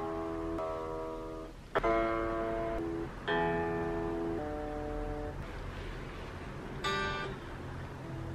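Freshly restrung Stratocaster-style electric guitar being played: a run of picked chords, each ringing for about a second, with a quick strum near the end.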